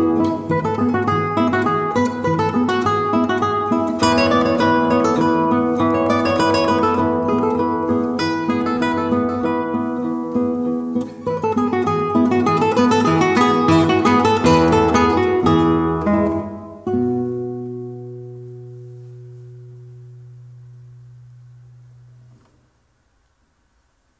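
Duo of nylon-string classical guitars playing a busy, many-noted passage together, which ends about 17 seconds in on a final chord that rings and slowly fades before cutting off at the very end.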